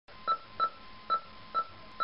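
A run of short electronic beeps at one pitch, unevenly spaced, like telephone keypad tones, over a faint steady tone and hiss.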